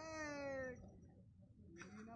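A single faint, drawn-out voice-like call lasting under a second, sliding slightly down in pitch.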